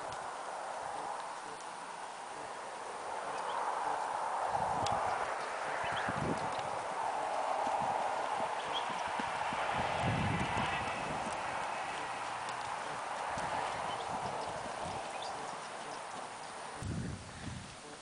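Hoofbeats of a Tennessee Walking Horse mare gaiting under a rider on a dirt track: a continuous clip-clop.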